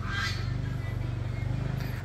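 A motor vehicle engine running steadily, a low hum with a faint regular pulse, and a brief hiss near the start.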